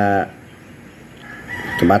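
A rooster crowing in the background, mixed with a man's commentary voice. One long held call trails off about a quarter second in, a fainter one follows from just past a second, and a couple of spoken words come near the end.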